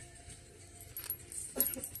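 Faint shop background music with a steady held note, and a few light metallic clinks from a chunky silver chain-link bracelet moving as the wearer handles merchandise, about a second in and again near the end.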